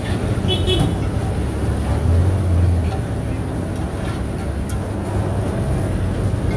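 A metal spatula scrapes and clicks against a large iron wok as oyster omelette is pushed around in the frying pan, over a steady low rumble of street traffic. A deeper drone swells for about a second around two seconds in.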